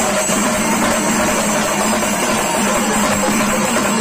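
Loud, dense music with drums, running steadily without a break.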